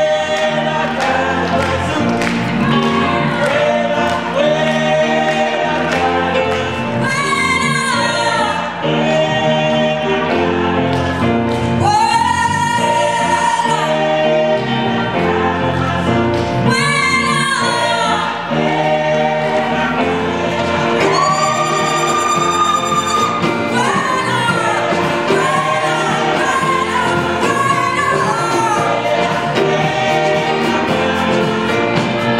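Gospel choir singing, with long high notes held several times.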